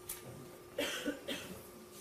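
A person coughing quietly, two short coughs about a second apart, over a faint steady hum.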